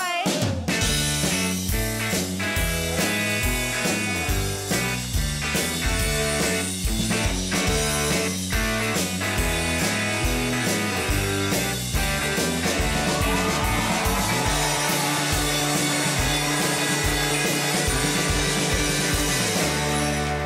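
House rock band playing a blues-rock instrumental, with electric guitar, a stepping bass line and regular drum hits.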